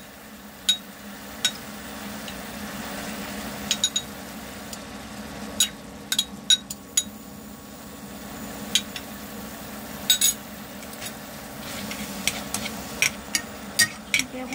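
Chopsticks stirring beef and vegetables in a cooking pot, with sharp, ringing clinks against the pot at irregular intervals, several in quick succession near the end, over a steady low background hum.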